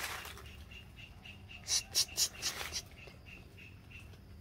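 A squirrel caught in a wire-mesh cage trap up in a tree, with four short, sharp, high sounds close together about two seconds in. A faint high chirp repeats evenly in the background.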